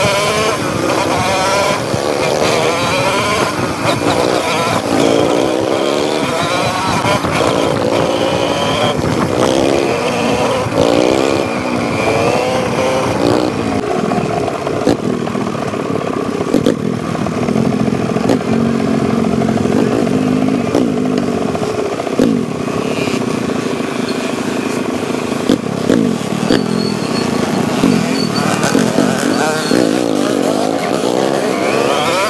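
Dirt bike engines running and revving, the pitch rising and falling again and again with throttle and gear changes, then holding steadier from about halfway. Occasional sharp knocks and clatter are heard over the engines.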